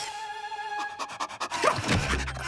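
Background music with a cartoon pug's quick panting, and two short rising whines near the end.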